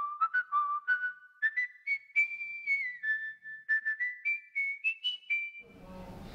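A person whistling a short tune, note by note: the melody climbs, dips in the middle and climbs again to its highest notes near the end.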